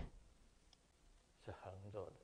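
Near silence with room tone, broken by one faint click a little under a second in and a brief murmur of a man's voice near the end.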